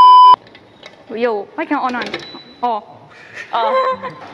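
A loud, steady censor bleep tone, about half a second long, right at the start, then people chattering in Mandarin.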